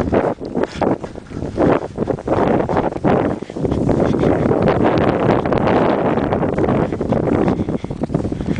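Running footsteps crunching in snow, with wind buffeting the microphone. The wind noise grows into a loud, steady rush through the middle.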